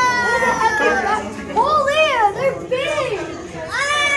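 Children's high-pitched voices: one long drawn-out cry that falls slightly in pitch, then a run of short rising-and-falling calls and exclamations.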